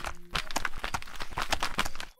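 Cartoon sound effect of a peeled banana's skin being flapped: a quick, even run of soft flapping slaps, several a second.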